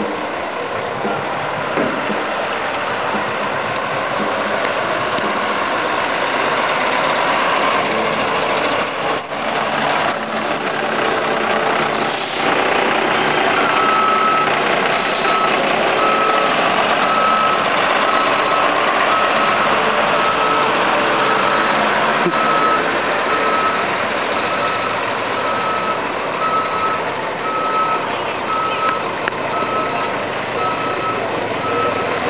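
A bus engine running as the bus manoeuvres, joined about halfway through by a steady, evenly repeating reversing beep.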